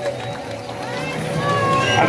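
Crowd chatter and scattered voices on a busy street, with a steady held note lingering underneath.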